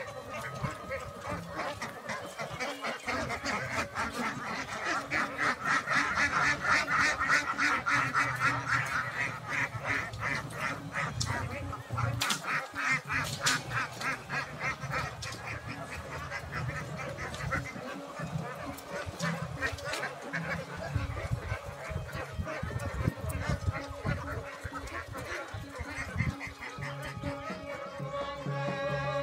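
A large flock of domestic ducks quacking continuously in a dense, overlapping chorus, loudest several seconds in.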